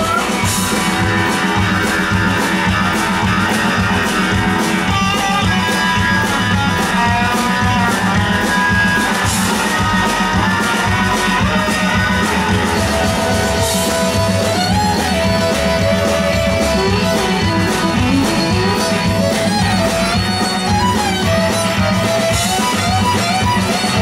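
Live country-rock band playing an instrumental break: a steady drum beat, bass and strummed guitars, with a lead melody line with slides over them in the second half and a fiddle bowing near the end.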